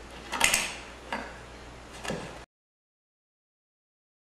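A few short handling clicks and knocks, three or four spaced about half a second to a second apart over a faint hum. The sound cuts off abruptly to dead silence about two and a half seconds in.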